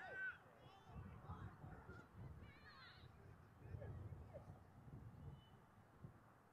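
Faint outdoor field ambience: wind rumbling on the microphone, with a few faint distant wavering calls.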